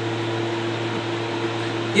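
Steady background hum and hiss, a low electrical-sounding hum with a few faint steady tones above it, unchanging throughout.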